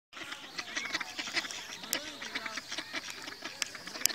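Ducks quacking, a dense chatter of many short overlapping calls.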